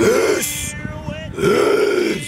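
A man belching twice, two drawn-out burps about a second apart.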